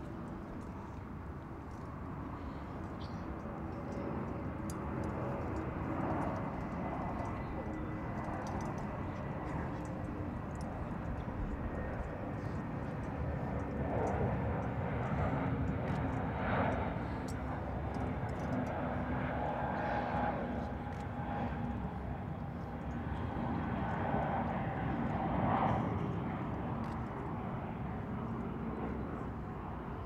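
An aircraft flying over: a steady low engine rumble with faint held tones, slowly growing louder through the middle and easing off near the end.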